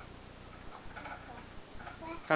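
Faint, steady rapid ticking under low room noise, with no loud event.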